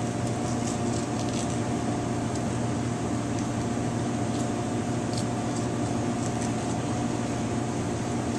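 Steady mechanical hum of kitchen equipment, with a few faint ticks and scrapes of a knife cutting along a flounder's bones.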